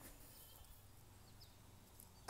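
Near silence: faint outdoor background with a couple of faint, brief high bird chirps early on.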